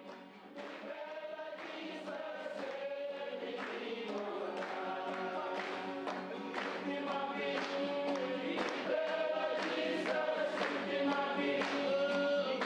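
A choir singing, growing gradually louder.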